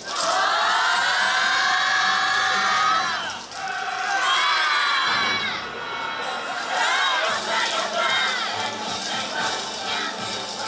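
A yosakoi dance team shouting together in long, drawn-out group yells, three in all: a long one at the start, another about four seconds in, and a shorter one about seven seconds in.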